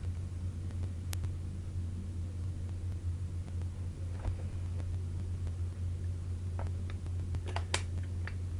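Steady low hum of room tone, with a few faint clicks: one sharp click about a second in and a few more near the end.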